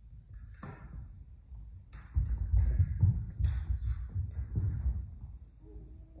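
Steel rapier and smallsword sparring: a quick run of footwork thumps on a wooden hall floor mixed with clicks and scrapes of blade contact, mostly between about two and five seconds in, with a short metallic ping near the end.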